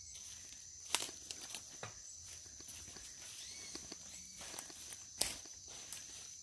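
Footsteps on leaf litter and undergrowth on a forest slope, an uneven run of rustles and small snaps, with two sharper clicks about a second in and about five seconds in.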